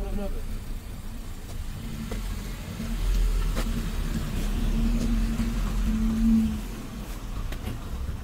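A police car's engine running as the car drives slowly past at close range. Its low hum grows louder for a few seconds, then fades as the car moves away.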